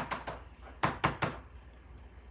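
Clear acrylic stamp block tapped on an ink pad to ink the stamp: about three light knocks close together, around a second in.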